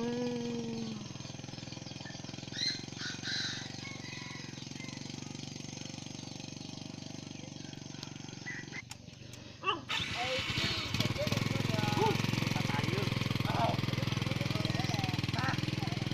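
A small motorcycle engine running steadily, with short bits of talk over it. About nine seconds in the sound breaks off abruptly, and from about ten seconds the engine is louder and closer.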